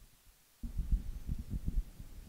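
Microphone handling noise: after a brief silence, an irregular run of low, muffled bumps and rumble begins about half a second in.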